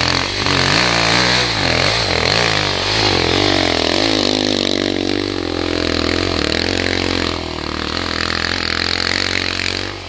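Off-road dirt-bike engines revving up and down under throttle as the bikes climb a dirt trail. The pitch swings up and down for the first several seconds, then holds steadier near the end.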